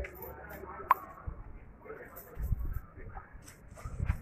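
Faint voices in the background, with one sharp click about a second in.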